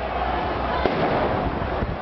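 A single sharp explosive bang about a second in, over the continuous chatter of a crowd of voices.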